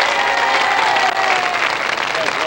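An audience applauding, a steady spread of clapping from many hands.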